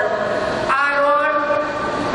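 A woman speaking into a podium microphone, her voice carried over loudspeakers.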